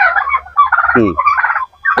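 Men talking in Bengali, with a short falling 'hmm' about a second in.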